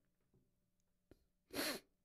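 Near silence, then one short, breathy vocal sound from a person about one and a half seconds in.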